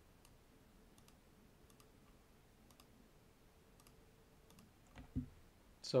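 Faint computer mouse clicks, a few spread out, some in quick pairs. A short low thump comes about five seconds in, just before a voice starts.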